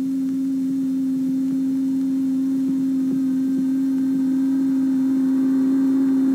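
Large microwave oven running: a steady electric hum that grows slightly louder.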